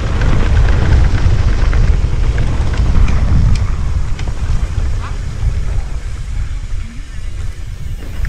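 Wind buffeting the action camera's microphone, with tyre rumble and clatter from a mountain bike riding down a dirt trail: a heavy low rumble, loud at first and easing off in the second half.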